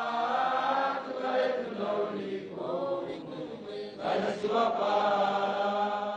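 A group of voices chanting a song together in long held notes, with a short dip about four seconds in before the singing swells again.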